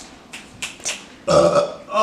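A man burps once, a loud belch about half a second long, a little over a second in. A few short clicks come before it.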